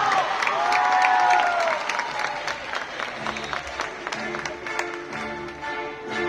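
Audience applauding and cheering in an open-air amphitheatre, with claps at about four or five a second. About three seconds in, the performers' backing music begins.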